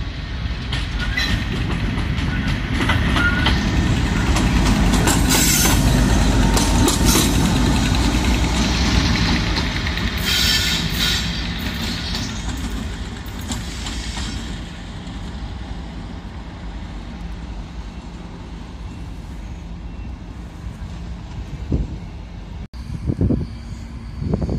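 Colas Rail Freight diesel locomotive passing: its engine and rumble build to a loud peak a few seconds in, with metallic wheel noise over the track partway through, then die away as it goes by.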